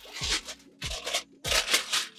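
A fabric shoe dust bag rustling and rubbing in three short bursts as the shoes are drawn out of it.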